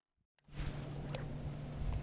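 Dead silence for the first half second, then a steady low hum from a bow-mounted electric trolling motor running, holding one even pitch.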